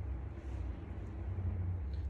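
A steady low hum of background noise, with no clear event in it.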